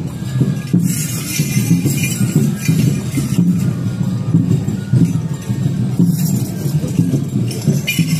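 Enburi festival music played live: a steady, pulsing rhythm of drums and accompaniment. Twice, from about a second in and again near the end, there is a burst of metallic jingling from the metal rings and plates of the dancers' wooden jangiri staffs.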